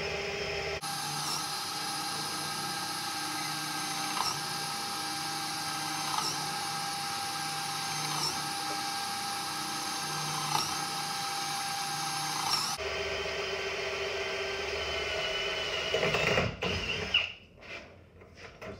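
Power drill with a 3/8-inch bit boring into a doorknob's lock cylinder just above the keyway, drilling out the pin tumblers to defeat the lock. The motor runs with a steady whine and a slight catch about every two seconds. Its pitch and load change about a second in and again near thirteen seconds, and the drill stops shortly before the end.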